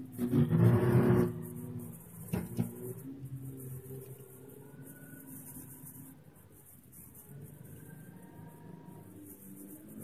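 A car engine droning steadily as heard from inside the cabin, with a loud burst of laughter in the first second.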